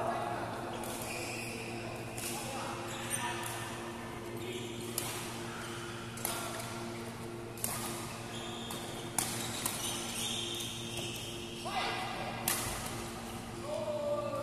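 Badminton rackets striking a shuttlecock in a doubles rally: about nine sharp cracks at irregular intervals, ringing briefly in a large echoing hall over a steady hum.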